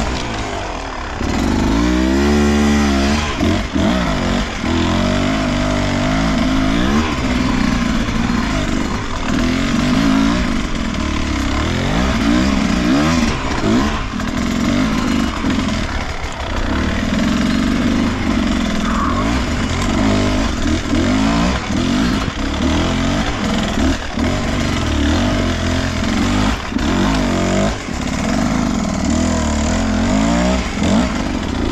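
Beta RR 250 Racing two-stroke enduro engine, fitted with an S3 high-compression head, revving up and down continuously as the throttle is worked on an uphill trail, its pitch rising and falling over and over.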